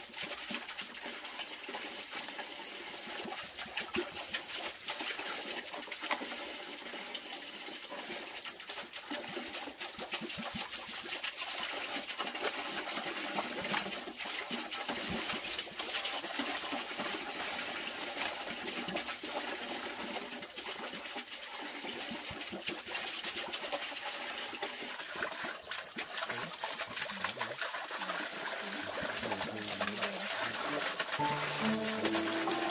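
Thin plastic bag crinkling and rustling in quick, irregular clicks as grilled fish are pushed off split-bamboo skewers into it, over a steady hiss.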